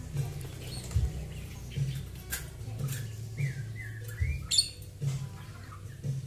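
A small caged bird gives a few short, curving chirps in the middle. Sharp clicks come and go across the stretch as plastic feed cups are handled against the wire cage.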